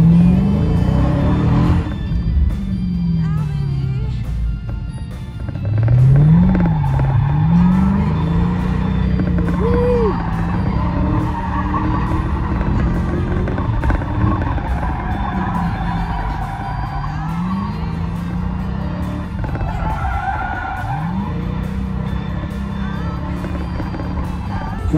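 A Dodge car's engine heard from inside the cabin, revving up and down over and over as it is driven hard. Tires squeal through the middle of the stretch and again briefly near the end.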